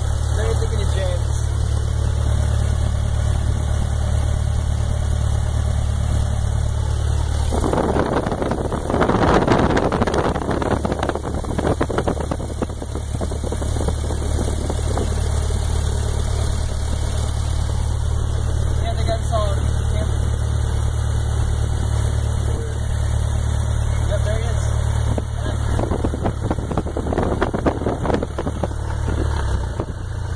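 Piston engine of a single-engine high-wing light aircraft running steadily at low power while taxiing, heard inside the cabin as a steady low drone. Two stretches of louder rushing noise come through, about eight and about twenty-six seconds in.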